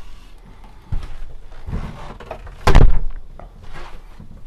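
Caravan interior fittings being handled: a knock about a second in, some rattling, then a heavy thump a little past halfway as a door or panel is shut.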